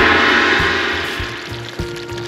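Creamy stew bubbling in an uncovered cast-iron Dutch oven, loud at first and fading, over background music.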